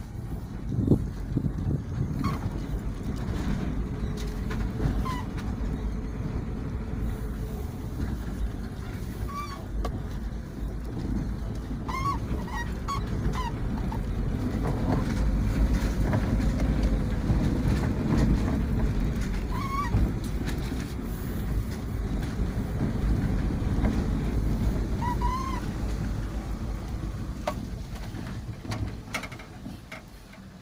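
Car creeping along a rough dirt track, heard from inside the cabin: a steady low engine and road rumble whose note slowly rises and falls with speed, with a few short high chirps scattered through it.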